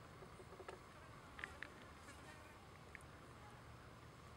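Near silence: faint outdoor background with a faint buzz and a few soft ticks.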